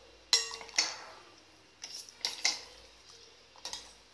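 Steel ladle clinking against a stainless-steel pot of dal as it is stirred: several sharp metallic clinks, the loudest about a third of a second in with a brief ring.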